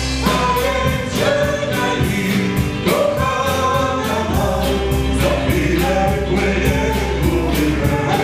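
Small band playing a song live: a woman singing lead into a microphone over drum kit, electric guitar and keyboard, with a steady drum beat.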